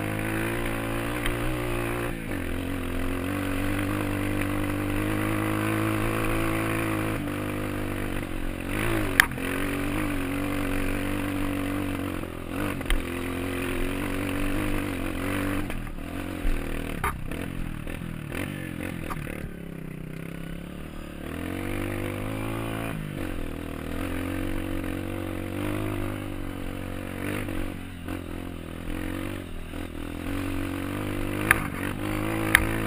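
Dirt bike engine running under way on a rough trail, its pitch rising and falling with the throttle, with a few sharp knocks and clatters from the bike over the ground. About twenty seconds in the engine eases off to a quieter, lower note for a couple of seconds before picking up again.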